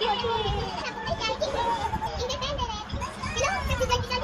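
Children's voices: high-pitched chatter and calls of kids at play, going on throughout.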